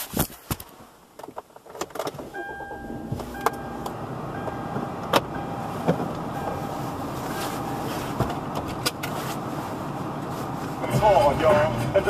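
Inside a car: a few clicks and knocks, then the car running steadily, with radio music coming in near the end.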